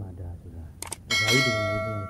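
A small metal bell struck once about a second in, just after a couple of sharp clicks, its ring of several steady tones fading over the next second and a half, over a man's voice.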